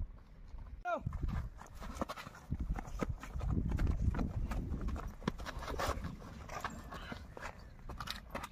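Several people's footsteps on dry, grassy ground, an irregular run of short steps and scuffs, with a brief vocal sound about a second in.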